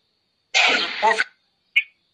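A person clearing their throat once, a short rough burst about half a second in, followed by a brief click.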